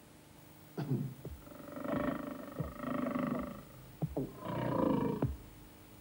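A lion growling: a short sound about a second in, then two longer growls lasting about a second each.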